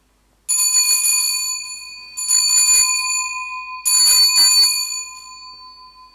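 Altar bell rung three times, about one and a half seconds apart, each ring clear and sustained and fading slowly: the sanctus bell marking the elevation of the chalice at the consecration.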